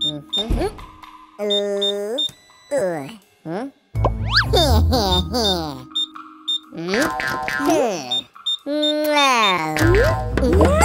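Cartoon character gibberish vocalizations, squeaky and sliding up and down in pitch, with springy boing-like comedy effects and short high beeps, over upbeat children's music with a bass beat that comes and goes.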